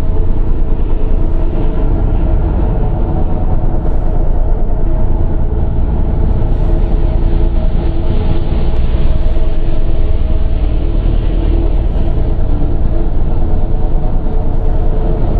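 Dark industrial drone music made in FL Studio: a loud, heavy low rumble under several sustained droning tones, with a soft hiss swelling about every two and a half seconds.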